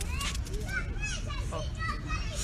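Children's voices at play in the background, several short high calls and shouts, with a nearby adult's brief "oh" near the end.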